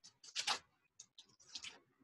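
A handful of faint, short noises as a man moves through a shadowboxing punch demonstration on a concrete patio: soft breaths, clothing and footwork sounds, spread through the pause.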